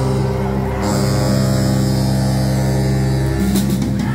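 Live band with saxophones, electric guitar and drums holding a steady, sustained low chord, with a few drum hits near the end.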